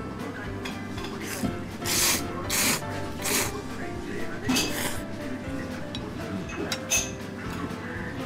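A person slurping dipping noodles (tsukemen) from the broth in several loud, hissing sucks, a few between about two and three and a half seconds in and another near five seconds, over background music.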